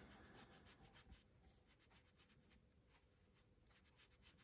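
Faint rubbing and scuffing of a foam ink-blending tool worked over a paper tag, barely above room tone.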